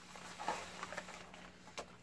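Faint rustling and a few soft knocks as camping gear is moved around on a blanket-covered table, over a faint steady low hum.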